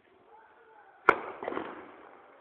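A single sharp bang about a second in, followed by a brief rush of crackling noise, over faint background voices.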